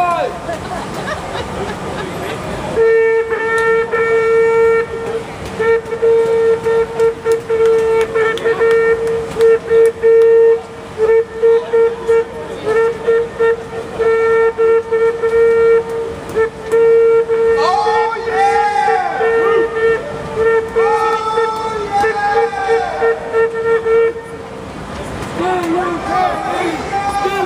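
A horn sounding one loud, steady note, held for about twenty seconds from about three seconds in, broken by short irregular gaps, and cutting off near the end. Voices can be heard over it toward the end.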